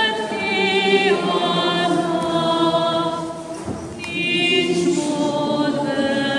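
Voices singing a slow church hymn together in long held notes, with a brief break between phrases about four seconds in.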